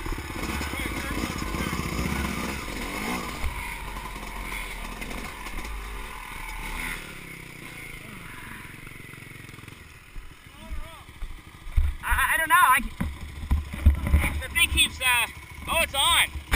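Two-stroke dirt bike engine idling, fading out about seven seconds in. After that, irregular knocks and bumps close to the microphone, loudest near the end, with a voice.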